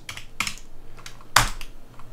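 Computer keyboard keys clicking as a command is typed: a few scattered keystrokes, with one louder key press about one and a half seconds in.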